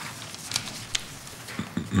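Low room tone picked up by the council chamber's microphones, with a few faint sharp clicks and taps scattered through it. A faint voice starts just before the end.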